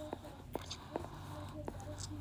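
Crayon writing on sketchbook paper: several sharp little taps and scratches about half a second apart as the crayon strokes and lifts, under faint whispering.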